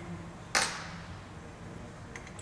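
A single sharp click about half a second in, with a short fading tail, as the resistor R1 is swapped on the amplifier's breadboard, over a low steady hum.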